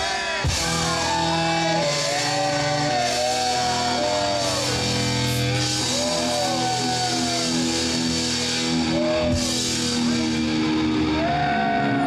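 Live rock band playing: bass guitar and drum kit under a melody line of held notes that bend up and down.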